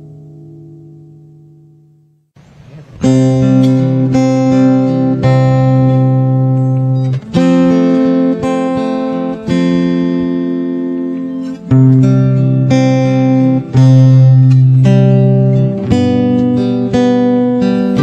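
Acoustic guitar: a held chord rings out and fades away over the first two seconds, then after a short pause the guitar starts a strummed chord introduction, changing chord every second or so.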